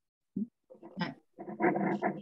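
A dog vocalizing over a video-call microphone: a few short sounds, then a longer drawn-out one starting near the end.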